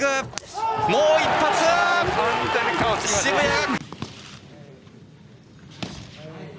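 Excited shouting voices for the first few seconds, rising and falling in pitch, then a much quieter stretch. A single sharp thud comes just before the end.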